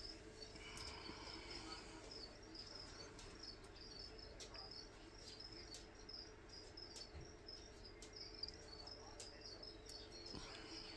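Faint chirping of crickets, a steady string of short chirps, over a steady low hum.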